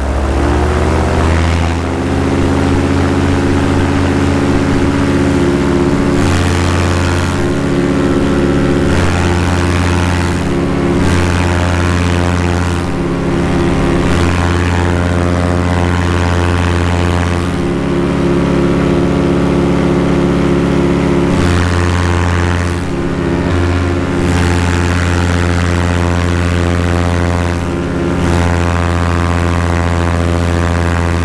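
Backpack paramotor's two-stroke engine and propeller running steadily at high power in flight, a loud droning buzz at a near-constant pitch. Heard close up from the pilot's harness.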